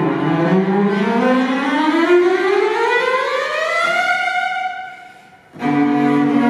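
Cello playing one long upward glissando that slides steadily for about four seconds, holds the top note and fades away. After a brief gap the cellos come back in together with full, held notes near the end.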